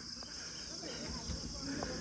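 Steady high-pitched drone of an insect chorus, with faint distant voices underneath.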